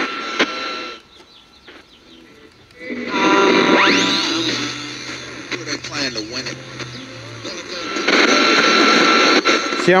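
GE P925 transistor AM radio being tuned across the band: hiss and static between stations, cut by snatches of broadcast voice and music. A squeal slides up in pitch about four seconds in. The loud noise between channels shows how sensitive this set is.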